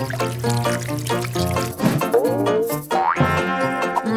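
Background music with a steady beat, with a sound effect that bends in pitch about two seconds in and a rising gliding effect about a second later.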